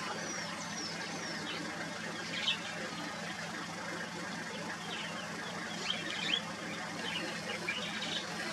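Wild birds calling: a few descending whistles early on, then scattered short chirps over a steady background hiss and low hum.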